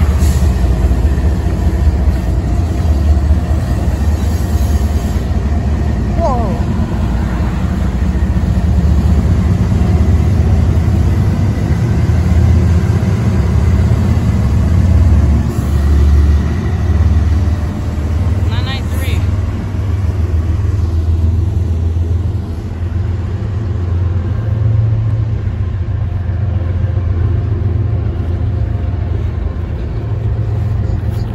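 A diesel-hauled freight train passing over a steel girder bridge: a steady, heavy low rumble of locomotives and rolling freight cars that carries on without a break. There are brief high-pitched glides about six seconds in and again near the middle.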